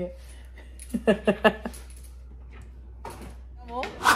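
Quiet room tone with a low steady hum, broken by a brief snatch of speech about a second in and a short rising vocal sound just before the end.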